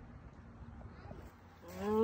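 Faint outdoor hiss, then near the end a man's voice starts a long, wavering, wordless held 'ohhh'.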